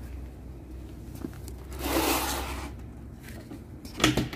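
A rustling scrape lasting about a second, two seconds in, from the plastic dashboard panel being handled, over a low steady hum.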